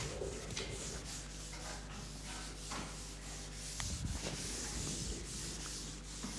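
Chalk writing on a blackboard: a run of short scratching and rubbing strokes, over a steady low electrical hum.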